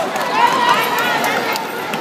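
A crowd of students shouting and whooping over a rapid patter drummed out by the audience, a crowd-made drum roll building up before the winners are announced.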